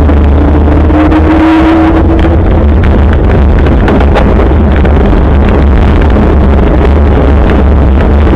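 Wind rushing and buffeting over a bicycle-mounted camera's microphone as the bike rolls along, with many small rattles and knocks from the road surface. A brief rising hum sits underneath in the first two seconds.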